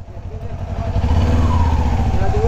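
Kawasaki Ninja 250 parallel-twin engine idling with a steady low rumble, building up about a second in. There is no ticking rattle: the dealer's repair has cured it.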